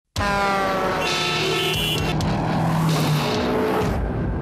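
A car engine sound starting abruptly and running loudly, its pitch slowly falling over the first second and a half, with a high hiss over it.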